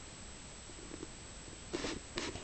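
Domestic cat grooming herself, licking her fur: faint small sounds about a second in, then one short, louder lick near the end.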